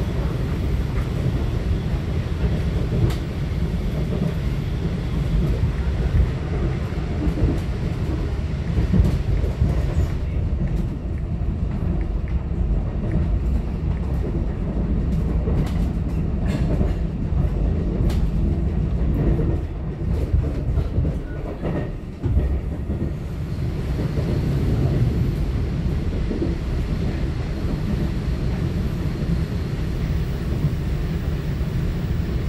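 Cabin running noise of a Taiwan Railways EMU900 electric multiple unit at speed: a steady low rumble of wheels on rail. From about ten to twenty-two seconds in, the hiss thins and a scatter of sharp clicks comes through.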